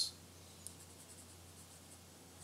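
Very quiet room tone with a low steady hum, and a faint click about two-thirds of a second in.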